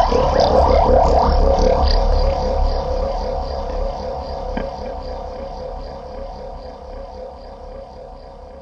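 Soundtrack drone: a sustained, wavering tone over a low rumble, starting loud and fading steadily away.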